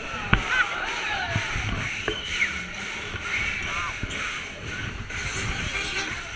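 Riders' voices on a Schäfer Voodoo Jumper fairground ride: scattered shrieks and calls that rise and fall in pitch, with a sharp knock about a third of a second in, over a steady din of fairground noise.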